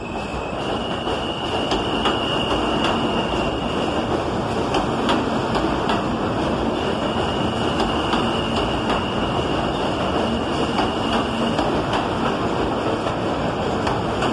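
R160 subway train pulling out and running past close by on an elevated track: a steady, loud rumble of steel wheels on rail that builds over the first two seconds, with light clicks over rail joints. A faint, high, steady whine comes in twice.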